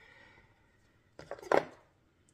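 A few light taps and then one sharp knock of a knife against a wooden cutting board, a little over a second in.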